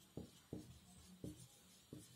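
Marker pen writing on a whiteboard: about four short, faint strokes as letters are written.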